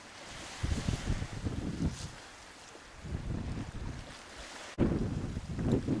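Wind buffeting the microphone in irregular gusts of low rumble, loudest near the end, over a steady wash of choppy sea.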